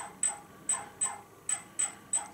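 DJI Phantom's brushless motors ticking during a motor test run from the phone app: short sharp ticks, two to three a second, each with a brief high ring.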